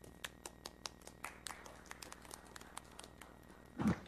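Footsteps clicking on a hard floor, quick and sharp at about five a second, with a faint steady hum beneath. Near the end comes a single louder thump.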